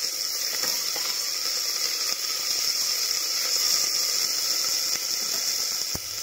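Onions, tomatoes and whole spices sizzling steadily in hot oil in an aluminium pressure cooker, with a spatula stirring and scraping a few times.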